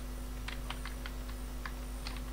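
Computer keyboard keystrokes: a handful of faint, scattered taps as text is copied and edited in a code editor.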